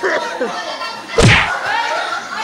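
A single loud thump about a second in, over a group's voices and laughter.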